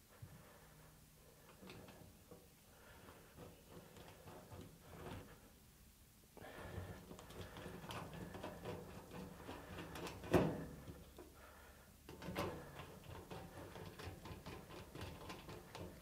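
Faint handling sounds of a long-handled hand rivet nut tool being worked at the sheet-metal toolbox lid: small metal clicks and scrapes, with one sharper click about two-thirds of the way through and a smaller one shortly after.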